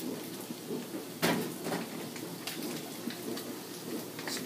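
Crackly rustling and clatter of a dish being put into a microwave oven, with one sharp knock just over a second in and a few lighter knocks after it.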